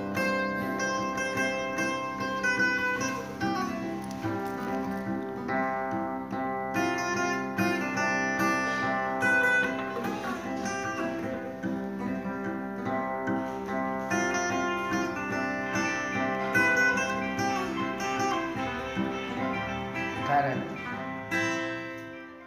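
Steel-string acoustic guitar playing a Jrai folk melody, with a steady run of plucked notes.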